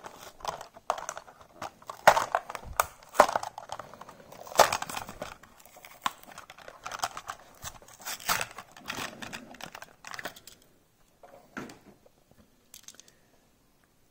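Clear plastic blister pack of a toy car crinkling and tearing as it is peeled open by hand, in an irregular run of crackles and rips. These thin out about ten seconds in, with only a few faint rustles after.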